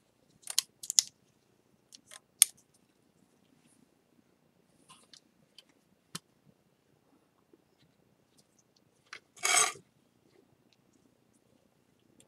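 Gloved hands handling a ceramic bowl being held together with a rubber band: a few light clicks and taps in the first few seconds, then one brief louder rustle about nine and a half seconds in.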